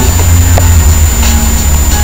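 A loud, steady low rumble with no speech.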